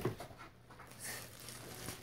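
Faint rustling of the plastic wrap on a new scooter as it is handled, a few soft crinkles about a second apart.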